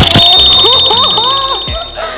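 An edited-in sound effect: a loud, shrill, steady high-pitched tone that starts abruptly and fades out within about two seconds, under a voice rising and falling in pitch.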